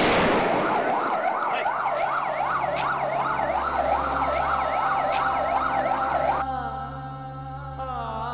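Emergency vehicle siren in a fast wail, its pitch sweeping rapidly up and down, opening on a loud burst. It stops about six and a half seconds in and gives way to a steady low musical drone.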